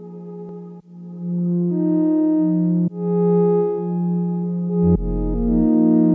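Eurorack modular synthesizer playing sustained quartal chords that change about every two seconds. A deep sine bass note enters about five seconds in.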